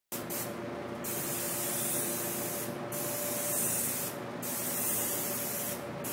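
Airbrush spraying paint in a steady hiss, broken by four short pauses, with a faint steady hum underneath.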